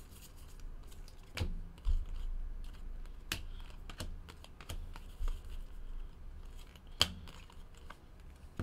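Baseball trading cards being flipped through by hand: irregular sharp clicks and snaps as cards are slid off a stack and set down, over a low rustle of card stock. The loudest snap comes near the end.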